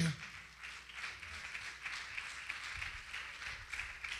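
Congregation applauding, a steady patter of many hands clapping, well below the level of the preaching.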